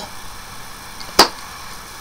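A single sharp click just over a second in, over quiet room background.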